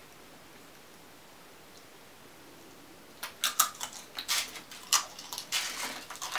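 Quiet room for about three seconds, then crisp chips being bitten and chewed: a run of sharp, irregular crunches.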